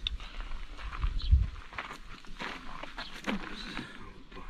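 Footsteps on gravel with scattered light clicks and knocks, and a dull thump a little over a second in.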